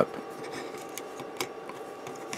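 A few faint clicks and rubs of small plastic model-kit parts being handled as the shotgun piece is fitted into the figure's hand.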